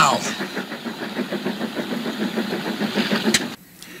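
A steady, engine-like mechanical rumble on the film's soundtrack, following a man shouting "now!". A sharp click comes just after three seconds, and the rumble then cuts off suddenly.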